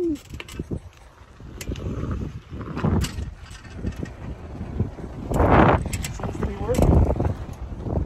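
Beach cruiser bicycle being ridden, its tyres rolling on pavement under uneven wind rumble on the phone microphone, with scattered clicks and a loud rush of wind about five and a half seconds in. The newly fitted coaster-brake rear wheel is running smoothly.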